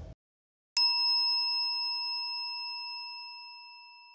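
A single bright metallic ding, struck once about three-quarters of a second in. Its high overtones die away fast while a lower chime tone rings on and slowly fades. It is the sting that goes with the production company's logo.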